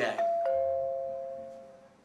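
Two-note ding-dong doorbell chime: a higher note, then a lower one a quarter second later, both ringing out and fading away over about a second and a half. It signals a caller at the front door.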